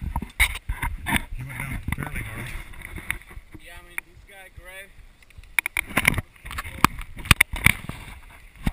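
Repeated knocks, clicks and rubbing of a GoPro camera being handled right at its microphone, with a low muffled voice a second or two in and a short warbling tone near the middle.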